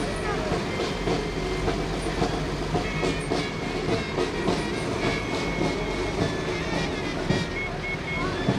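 Fire engines' diesel engines running as the pumpers drive slowly past, a steady, dense rumble, with voices from the crowd.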